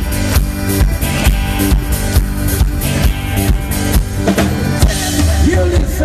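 Live rock band playing: a drum kit keeps a steady beat under guitars and bass, and a melody line bending up and down comes in about four seconds in.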